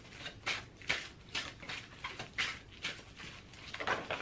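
A deck of tarot cards being shuffled by hand: soft, short strokes of the cards sliding against each other, about two a second.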